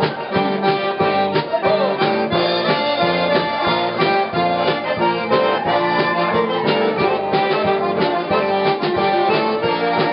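Live Cajun band music: a Cajun button accordion leads, with fiddle and a steady drum beat.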